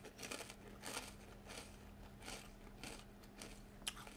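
A person chewing a ridged potato chip with the mouth closed, making faint crunches at irregular intervals.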